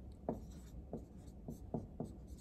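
Marker pen writing on a whiteboard: about five short strokes, one after another.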